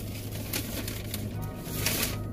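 Low, steady hum of a car's air conditioning running inside the cabin, under faint background music, with a couple of brief clicks.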